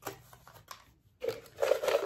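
Folded paper prompt slips rustling and rattling inside a clear plastic jar as it is shaken, starting about halfway in and growing louder; before that only a few faint clicks.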